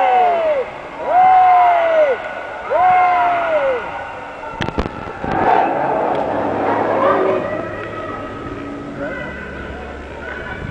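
A young child's voice calls out three times in long, high calls that rise and fall in pitch, each about a second long. A sharp knock comes about five seconds in, followed by a burst of mixed crowd noise that fades off.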